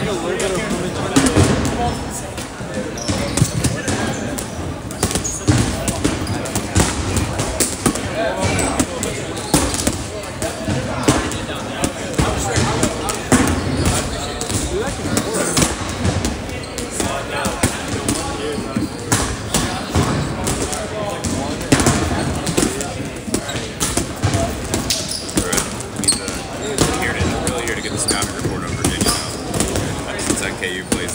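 Dodgeballs bouncing on a hardwood gym floor, many short irregular impacts throughout, amid players' chatter.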